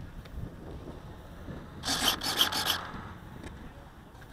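Handling noise on a small action camera: hands and clothing rubbing and scraping against the camera as the glider it is mounted on is held and turned, with a louder burst of several quick scrapes about two seconds in.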